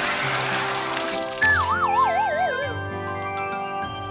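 Hissing water spray from a cartoon water truck's hoses over background music, then about a second and a half in a wobbling cartoon sound effect that falls steadily in pitch over about a second, while the music goes on.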